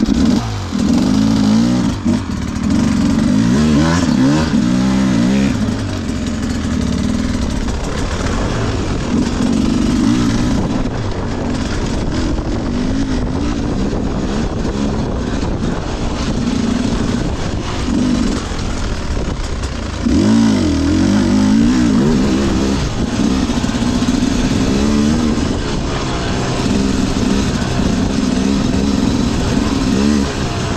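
Enduro dirt bike engine being ridden, its note rising and falling again and again with the throttle.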